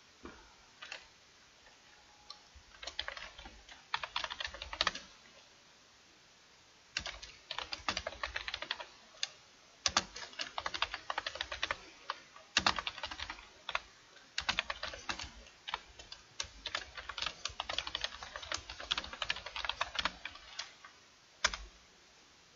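Computer keyboard typing in runs of rapid keystrokes with short pauses between them, the longest pause lasting about two seconds, roughly five seconds in.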